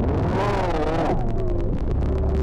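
Eurorack modular synthesizer drone: a steady low drone under slowly gliding, wavering tones, with a rush of noise through the first second.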